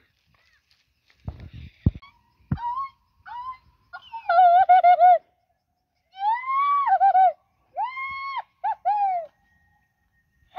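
A bird calling loudly in a series of quavering, arched calls, each rising and then falling, from about two and a half seconds in. A few dull thumps come just before the calls begin.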